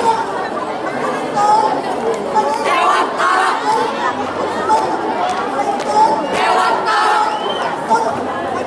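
Crowd chatter: many voices talking at once, with louder swells of voices about three seconds in and again a little past the middle.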